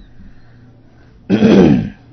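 A man clears his throat once, loudly, about a second and a half in.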